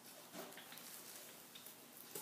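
Near silence: a faint hiss with a few soft clicks and rustles from plastic-gloved hands working a knife into a sardine.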